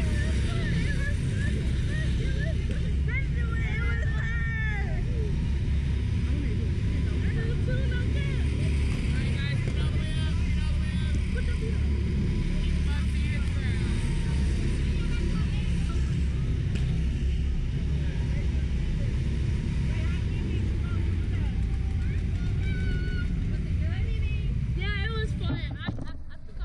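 Steady low rumble of wind buffeting the microphone of the ride capsule's onboard camera while the capsule is in motion, with faint voices over it. The rumble drops away right at the end.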